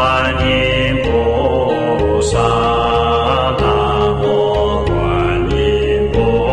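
Slow Buddhist devotional chant with musical accompaniment, moving through long held notes that change about once a second.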